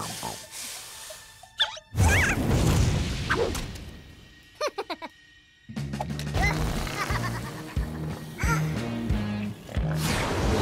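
Cartoon soundtrack: music with sound effects, a sudden loud hit about two seconds in that dies away, a few short squeaky creature chirps near the middle, then music with a steady stepping bass line.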